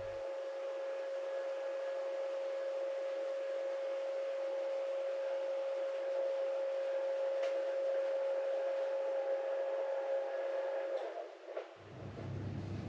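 Electric motor of a motorised adjustable bed running with a steady hum as the bed moves from sit-up to flat, stopping about eleven seconds in.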